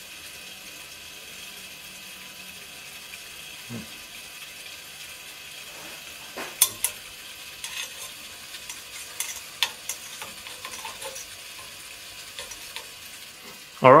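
Steady rushing hiss of a fume hood's extractor fan, with a scattering of light clicks and taps from glassware and fittings being handled, the sharpest about six and a half seconds in.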